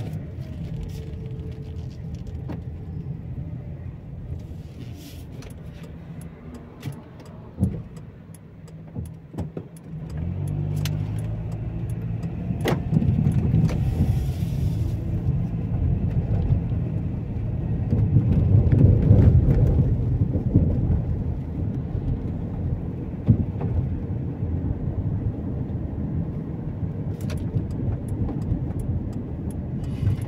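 A car being driven: a low engine and road rumble, quieter for the first ten seconds while the car waits at a junction, then louder as it pulls away and gathers speed. Light clicks and rattles come and go.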